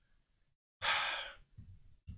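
A man's single audible breath close to the microphone, a short breathy rush about a second in that lasts about half a second.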